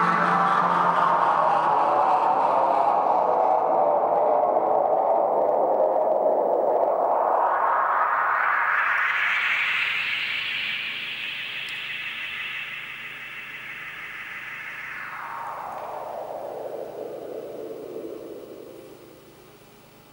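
A hissing electronic drone run through an effects sweep at the close of a song. The band of noise falls in pitch, rises high around the middle, holds, then sinks again while the whole sound fades away.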